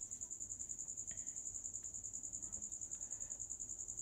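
A cricket trilling steadily and faintly: a high, evenly pulsing tone of about a dozen pulses a second.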